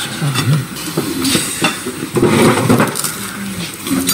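Cutlery and crockery clinking at a dinner table, with short scattered clinks and low, indistinct voices underneath.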